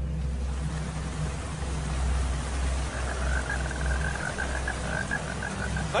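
Steady rain falling, with a low rumble underneath. About halfway through, a frog starts calling in a quick, even run of pulses that lasts nearly three seconds.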